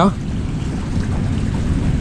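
Steady low rumble and hiss of a small aluminium boat under way on open water.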